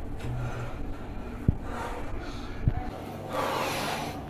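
Quiet room sounds with two soft low thumps, the first about a second and a half in and the second just over a second later.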